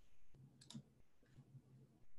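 Near silence: room tone with two faint clicks close together about half a second in.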